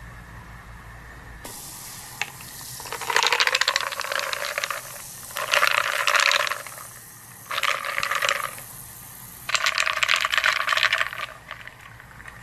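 Liquid splashing and fizzing in a glass of highball, in four bursts of a second or two each, after a single click.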